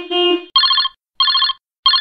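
Electronic beep sound effects of a subscribe-reminder countdown animation. A two-part pitched beep comes at the start, then three short trilling, ring-like beeps about two-thirds of a second apart.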